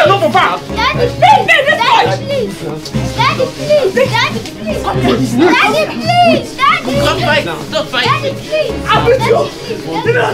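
Many voices shouting over one another, children's voices among them, over background music with a repeating low bass note.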